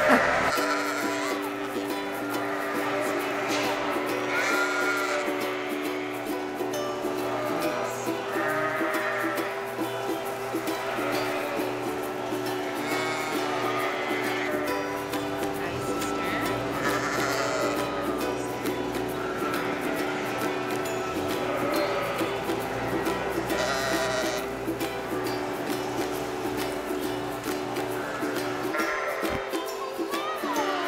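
Lambs bleating several times over background music that holds steady sustained notes throughout.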